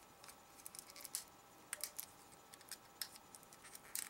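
Faint, irregular small clicks and plastic crinkles as a folding pocket knife cuts through the tape sealing a small clear plastic pouch.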